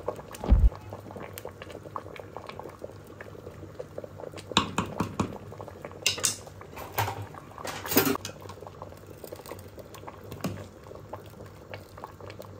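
A pot of thick sauce boiling, bubbling steadily, with scattered knocks and scrapes of utensils against the aluminium pot, the loudest a low thump about half a second in.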